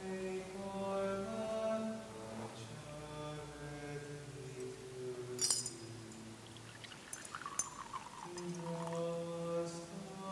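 Slow chant of long held notes, changing pitch every second or so. A single sharp clink of glass or metal sounds about five and a half seconds in.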